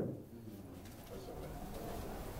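Faint, low cooing of a bird, like a pigeon's coo, in an otherwise quiet room.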